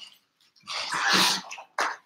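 A person coughing: one noisy burst of most of a second, then a short second one near the end.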